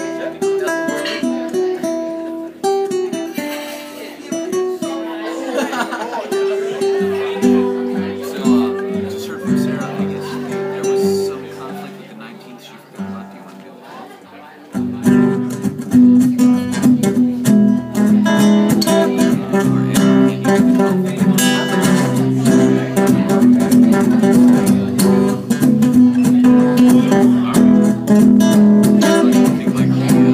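Solo nylon-string acoustic guitar playing a song's instrumental opening. For about fifteen seconds it plays quiet, sparse picked notes, then it breaks into louder, fuller strumming.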